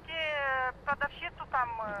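A woman's voice heard through a phone's speakerphone: one long, high-pitched drawn-out sound falling slightly in pitch, then a few short clipped words, all thin and cut off at the top as phone audio is.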